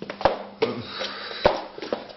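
Footsteps on a wooden floor: a few heavy steps, the two loudest thuds about a second apart.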